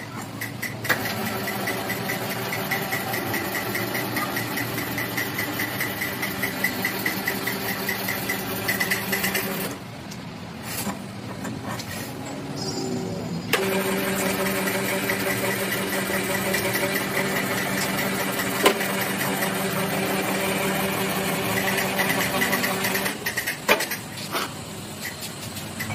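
Cylinder-head resurfacing machine running steadily with a fast even ticking. It drops off about ten seconds in, comes back louder with a steady hum about three and a half seconds later, and cuts off shortly before the end.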